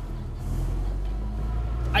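2008 Honda Civic Si's K20 four-cylinder engine, fitted with a catless header and cat-back exhaust, running steadily, heard from inside the cabin.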